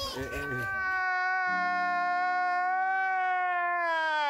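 A long, drawn-out wailing cry, held at one pitch and sagging a little near the end: a comedic crying-laughing meme sound effect cut in after a joke.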